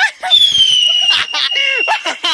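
A long, high, clear whistle that slides slowly down in pitch for about a second and a half, with men's voices over it.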